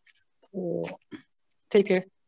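Speech only: a man's voice, with a drawn-out vowel about half a second in and another short voiced sound near the end, like spoken hesitation.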